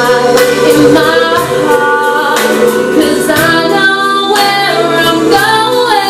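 A woman singing a slow gospel-style show ballad solo, live, with long held notes.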